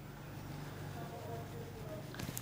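Faint steady low hum and room tone from an open microphone, with no distinct clicks or events.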